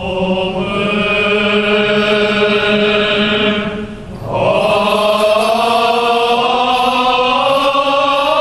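Men's choir singing Armenian liturgical chant in long held notes over a steady low note. It breaks for a breath about four seconds in, then resumes on a higher held note.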